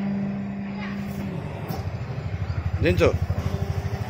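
Electric paper plate making machine running: a steady motor hum, then from about a second and a half in a fast, even low pulsing that grows louder as the machine works through a pressing cycle.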